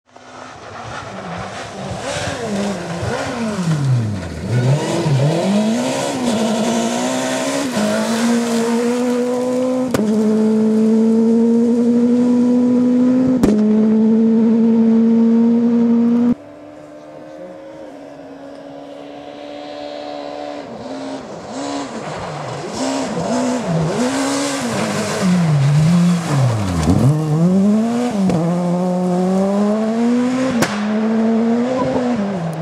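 Rally cars on a gravel special stage, engines at full throttle: revs climbing and dropping sharply through gear changes and lift-offs, then held high for several seconds. The sound drops suddenly about halfway in, and a car is then heard approaching, growing louder with repeated quick rev drops as it comes through.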